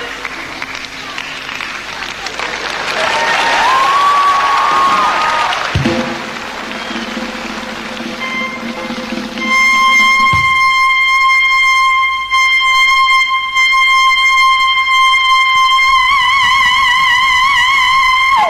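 A male singer's very high falsetto voice holding one long, dead-steady note, which breaks into a wide vibrato near the end. Before the held note comes a noisy stretch with brief gliding tones.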